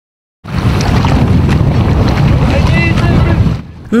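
Water splashing as a swimmer thrashes in a pond, heavily overlaid by wind buffeting the microphone, with a brief shout about three quarters of the way in. It starts suddenly after a short silence and drops off just before the end.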